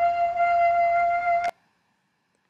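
A person's voice holding one high, steady vowel during a stroboscopic laryngoscopy, cutting off abruptly about a second and a half in. The vocal folds making it have straight margins but do not close completely, leaving a small gap.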